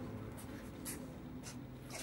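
Faint room tone with three or four soft, brief rustles.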